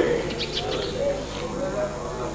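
Small birds chirping in short high calls over a background of people talking.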